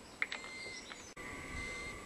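A sharp plastic click as a battery cell's vent cap is pressed on, with a couple of fainter clicks after it, over a faint background with a thin steady high tone.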